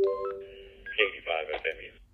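A radio receiver's speaker gives a short electronic tone of several pitches, then plays a brief burst of a man's voice relayed through an AllStar-to-DMR Brandmeister bridge, thin and tinny.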